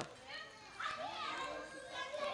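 Background voices of people talking, with children's voices calling out among them, quieter than close speech.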